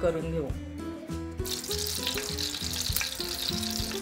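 Ghee sizzling in a hot kadhai on a gas stove. The hiss starts abruptly about a second and a half in and then holds steady.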